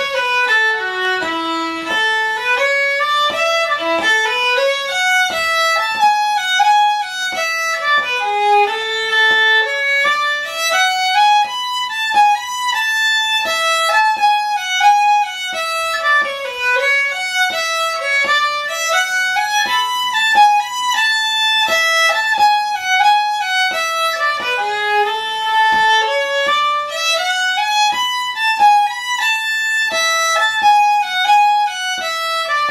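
Fiddle playing a Swedish polska melody, bowed in phrases that climb and fall.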